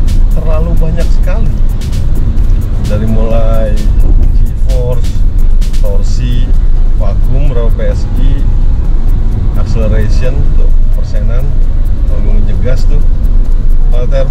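A man talking over music, with steady low road and engine noise inside the cabin of a Mitsubishi Xforce driving on the highway.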